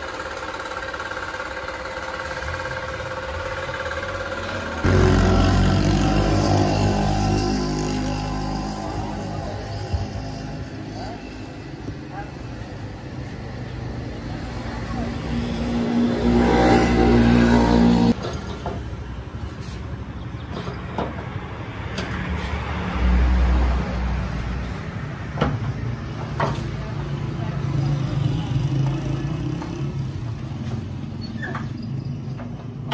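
Motor vehicle engines running, with one climbing in pitch about halfway through before the sound cuts off abruptly, mixed with people's voices.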